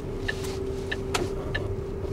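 Diesel engine of a car-transporter truck, heard from inside the cab, running with a steady hum while the truck manoeuvres. Light sharp clicks come every few tenths of a second.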